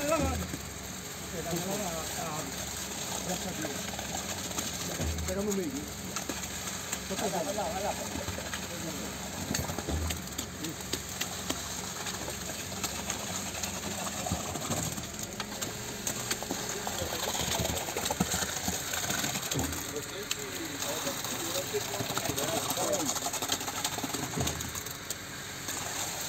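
Concrete pump running steadily while concrete pours from its hose into a trench form, with a low thump about every five seconds. Workers' voices mix in under it.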